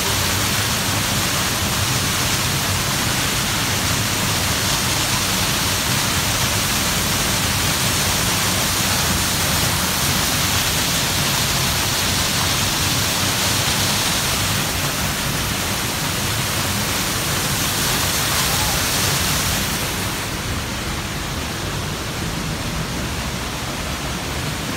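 Rifle Falls waterfall pouring down in a steady, loud rush of falling water. About twenty seconds in it turns duller and a little quieter.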